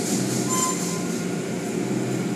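Automatic tunnel car wash running, heard from inside the car: a steady mechanical hum with the hiss and swish of water spray and hanging cloth strips dragging over the foam-covered car. A brief high tone sounds about half a second in.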